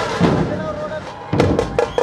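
Dhol-tasha drum troupe playing: deep barrel-drum strokes and sharp tasha beats. The beat thins out briefly, then a loud stroke about a second and a half in starts a fast, even rhythm of about five beats a second.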